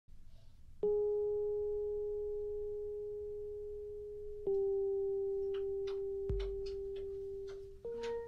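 Two bell-like musical notes, each struck sharply and ringing on for several seconds as it slowly fades, the second a little lower than the first. Light clicks and a soft thump follow the second note.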